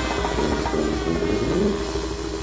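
Brass-and-percussion band music: a sustained brass chord thinning out over a low drum rumble.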